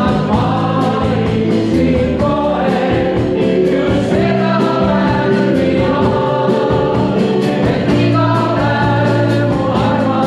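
A live band of electric keyboard, bass guitar and drums accompanying a group of voices singing together, with the cymbals keeping a steady beat.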